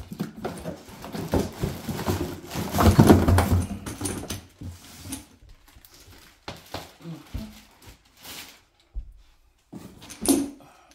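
Plastic bag wrapping crinkling and a cardboard box being handled as a bulky pressure washer unit is lifted out and set down. The rustling and knocks peak about three seconds in, then thin out into scattered handling sounds.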